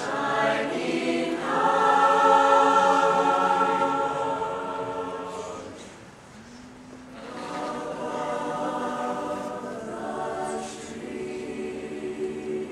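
Large mixed choir singing in sustained chords: one phrase swells to its loudest a couple of seconds in and fades away about six seconds in, then a softer held phrase follows.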